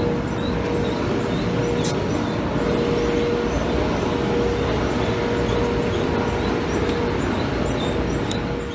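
Steady loud rumble of a Long Island Rail Road train standing at a station platform, with a steady mid-pitched hum running through it that drops out briefly a few times. A short sharp click about two seconds in.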